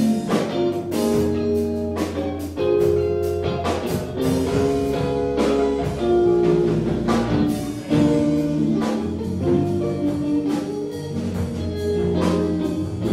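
Live instrumental rock band: electric guitar playing a melody of held notes over electric bass and a drum kit keeping a steady beat.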